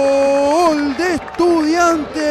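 A male sports commentator's drawn-out goal call: one long held shout of "gol" that breaks off about a second in, followed by shorter shouts that rise and fall in pitch.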